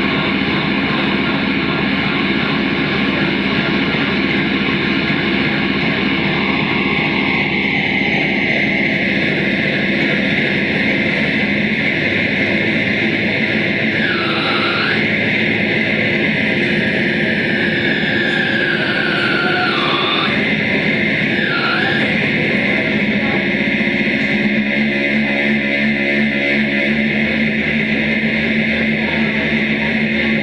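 Live experimental electronic noise music: a dense, unbroken wall of droning noise with held tones throughout. About halfway through, a few sweeping pitch swoops dip down and rise again.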